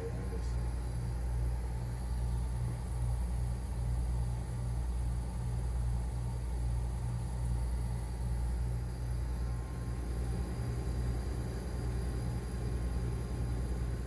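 1980s central air conditioner running with R-22 refrigerant: a steady low compressor hum with a hiss of refrigerant and air coming through the wall vent.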